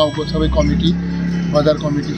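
A motor vehicle's engine running close by: a steady low drone that comes in about a quarter second in, under a man talking.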